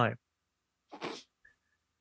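Silence broken about a second in by one short breathy sound from a person, a brief exhale-like burst after a spoken punchline. A tiny faint blip follows it.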